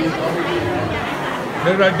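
Background chatter: several people talking at once in a large hall, with one voice coming in louder near the end.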